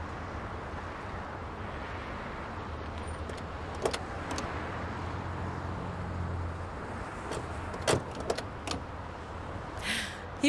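Street traffic with car engines running at the kerb, a low engine hum swelling in the middle as a taxi pulls in. A few sharp clicks and a knock in the second half: a car door being opened and shut.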